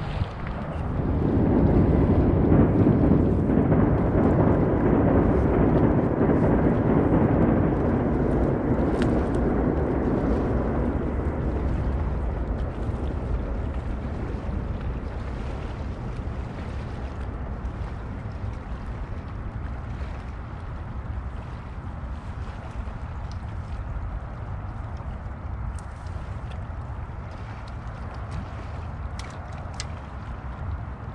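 Steady rushing noise of wind and water at the shore, swelling about a second in and easing after about ten seconds.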